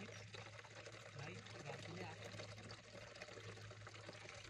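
Faint water trickling, with faint voices in the background and a low steady hum.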